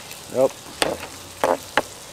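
Wood fire in a metal fire basket, fed with gas-contaminated engine oil, burning with a steady hiss and three sharp crackling pops in the second half.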